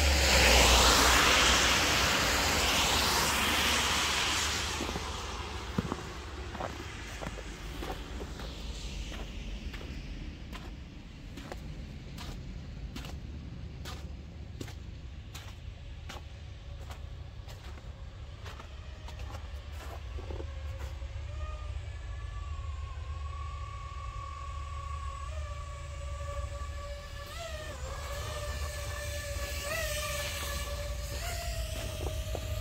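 A car drives past on a wet road, its tyre hiss swelling about a second in and fading away over the next few seconds, over a steady low rumble. Near the end a faint wavering whine comes in.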